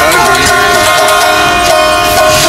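Folk singing by an elderly man, his voice wavering over a small long-necked stringed folk instrument that sounds a steady held tone throughout.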